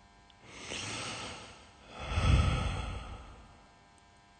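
Slow, heavy breathing close to the microphone: two long breaths, the second louder and deeper, part of a steady rhythm of a breath every couple of seconds.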